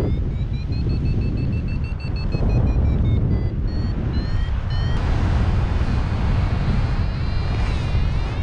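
Wind rushing over the microphone of a paraglider in flight, with a flight variometer beeping high and fast. Its pitch steps up and down through the first five seconds and slides again near the end, the tone of the instrument signalling the climb in a thermal.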